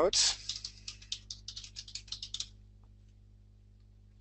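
Typing on a computer keyboard: a quick, irregular run of keystrokes lasting about two and a half seconds, then it stops.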